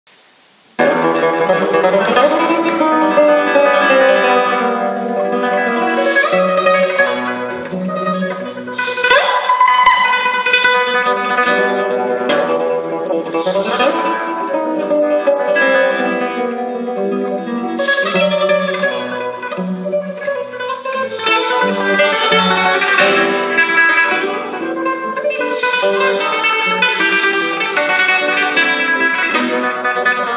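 Classical nylon-string guitar played solo: a busy stream of plucked melody notes over lower bass notes, beginning suddenly about a second in.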